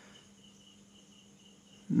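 Faint background sound in a pause between speech: a high-pitched tone that comes and goes in short stretches, over a steady low hum.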